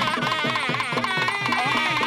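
Indian temple music: a buzzy reed wind instrument plays a winding, ornamented melody over a quick, even drum pattern.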